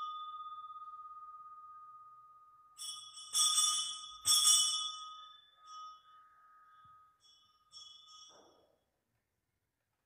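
Altar bells rung at the elevation of the chalice during the consecration. Ringing carried over from earlier strikes dies away first, then three fresh strikes come about three to four and a half seconds in, followed by a few faint shakes, and the ringing is cut off shortly before the end.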